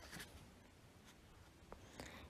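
Near silence: faint room tone in a pause between read-aloud sentences, with one small click near the end.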